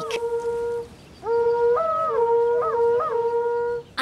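Horagai (conch-shell trumpet) blown in two long blasts: the first ends just under a second in, and the second starts about a second later, its pitch breaking upward and dropping back a few times before it stops near the end.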